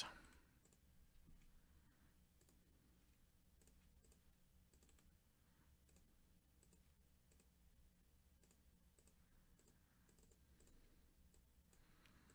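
Near silence with a few faint computer-mouse clicks.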